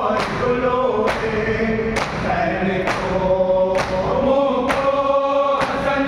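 A group of men chanting a noha (Shia lament) together, with their palms striking their chests in matam in unison. The strikes fall as a steady beat, about one a second, roughly seven in all.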